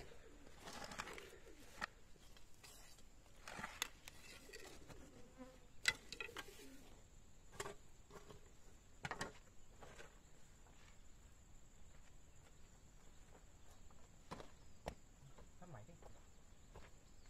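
Scattered scrapes and knocks of a hoe and a knife blade working dry, lumpy soil, faint and irregular, a stroke every second or two.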